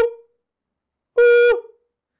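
A short, steady, high-pitched vocal hoot about a second in, held on one note, made to set off a sound-activated MIOPS Smart+ camera trigger; the tail of a first hoot ends just at the start.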